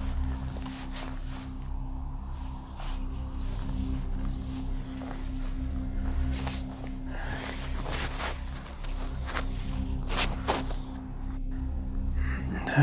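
Footsteps on grass and the knocks and rustle of a handheld camera being moved about and set down on a wooden bench, over a steady low hum.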